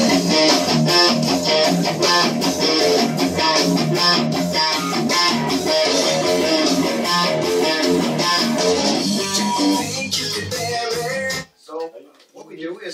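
Electric guitar, a Caparison Apple Horn, played in a dense run of quick notes and chords, stopping abruptly just before the end.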